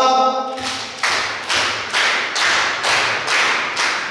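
A hall audience clapping together in time, a steady beat of about two claps a second, following a leader's hand signals in a clap-along practice; the claps stop near the end.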